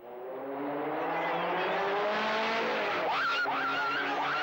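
A vintage race car's engine speeding toward and past, the sound swelling over the first second and then holding steady, with a higher wavering sound from about three seconds in.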